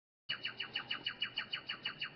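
A bird singing a rapid trill of short chirps, about seven a second, each sliding down in pitch, starting abruptly about a quarter second in.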